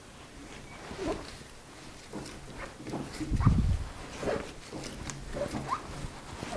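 Machine tap turned by hand in a T-handle tap wrench, cutting an M12 thread into a fairly soft metal mill adaptor: irregular short squeaks and clicks as the tap cuts, with a low thump a little past halfway.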